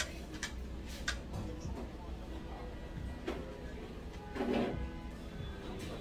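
Faint background music playing in a restaurant, with a few light clicks of chopsticks and spoons against bowls in the first second or so and a brief voice about four and a half seconds in.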